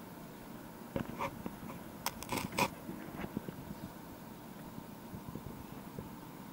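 A few sharp knocks and clanks, a cluster of them about two seconds in and single ones near one and three seconds, over a steady background noise: crew stepping on the metal boarding steps and gear of an enclosed lifeboat as they climb aboard.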